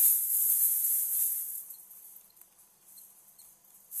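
Room tone: a steady high hiss that fades away about a second and a half in, leaving near silence with a few faint high pips and a single faint tick.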